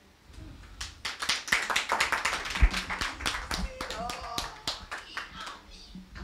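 Scattered hand claps at an irregular pace for several seconds, fading near the end, with faint voices among them.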